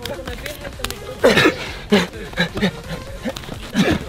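Several short, strained grunts and exclamations from two men straining against each other in a plank-position hand-wrestling contest.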